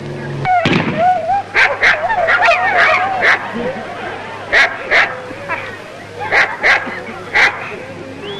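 Police Alsatian barking in a run of about ten sharp barks as it chases a man playing a thief. A wavering higher sound runs under the first few seconds.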